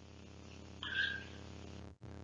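Faint steady electrical hum with several evenly spaced tones: the recording's background in a pause between spoken sentences. About a second in there is one brief soft sound, and the audio cuts out for an instant near the end.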